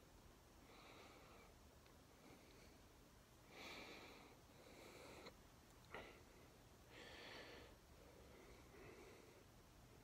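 Near silence with a few faint breaths close to the microphone and a small click about six seconds in.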